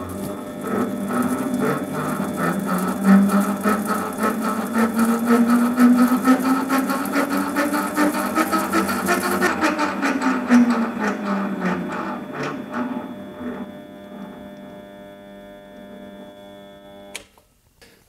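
Holzmann ED 400 FD DIG mini metal lathe running for the first time: its whine rises as the spindle speed is turned up and falls as it is turned back down, over a rapid clattering from the gear train, and it stops suddenly near the end. The owner finds that the lead-screw change gears were set too tight and were colliding.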